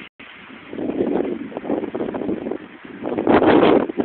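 Wind gusting against the microphone, a rough rumbling rush that swells about a second in and again, louder, near the end.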